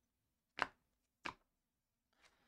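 Two short, crisp snaps about two-thirds of a second apart, as Panini Prizm basketball trading cards are flicked off the stack in the hand one at a time.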